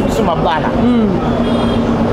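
A woman's voice talking, one syllable drawn out into a held tone near the end, over a steady low rumble of background noise.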